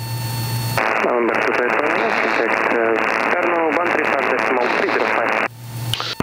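An air traffic controller's voice over the aircraft's VHF radio, sounding thin and narrow like a radio transmission, with a low hum at the start and end of the transmission.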